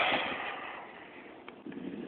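Wind on the microphone outdoors: a brief rush of noise at the start, then faint steady wind hiss, with a small click about one and a half seconds in.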